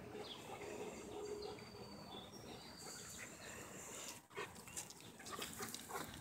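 A dog making faint, short, high-pitched whining sounds, followed by a few light clicks near the end.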